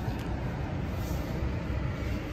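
2022 GMC Sierra 1500 pickup's engine idling in Park, a steady low rumble heard from inside the cab.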